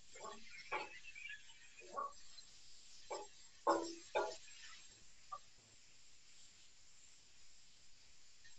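Wooden spoon stirring chicken pieces in a frying pan: a few irregular scrapes and knocks against the pan in the first half, then quieter, over a faint steady hiss of the chicken frying.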